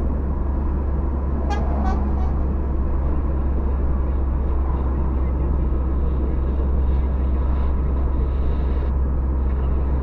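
Steady road and engine noise of a car at highway speed, heard inside the cabin, with a deep low rumble. About a second and a half in, a brief pitched sound comes as three short pulses.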